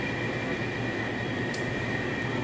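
Steady background hum of coffee-shop equipment at the counter, with a thin high whine running through it and one faint tick about a second and a half in.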